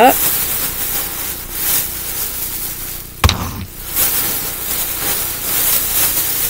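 Rustling and crinkling of a shopping bag being rummaged through, with one sharp knock a little over three seconds in.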